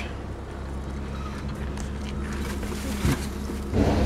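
The 3.0-litre 24-valve DOHC V6 of a 2000 Ford Taurus idling with a steady low hum. The engine has a rod knock, but it is not audible at this idle. A brief rustle comes near the end.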